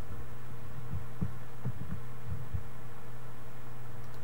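Steady low electrical hum in the recording, with a few short, soft low thumps during the first two and a half seconds.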